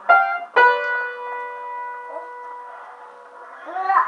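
Upright piano keys struck by a child's hand: two notes or key clusters a moment apart, the second left ringing and slowly fading over about three seconds.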